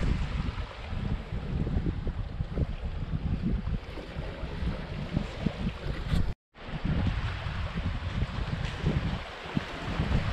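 Wind buffeting the microphone in gusts, over a wash of small waves at the shoreline. The sound cuts out for a moment a little past halfway.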